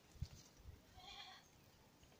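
A faint, short animal call about a second in, heard against near silence and preceded by two soft low thumps.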